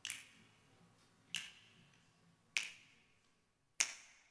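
Four finger snaps, evenly spaced about 1.2 seconds apart, keeping the beat.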